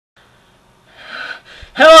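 A man's short audible breath in, a breathy gasp about a second in, followed near the end by his voice starting to speak.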